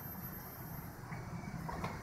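Faint, steady background ambience with a low hum and no distinct sound events.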